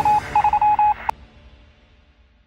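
A quick string of short electronic beeps, all at one pitch, in two runs. It stops with a sharp click about a second in, and then the sound fades away.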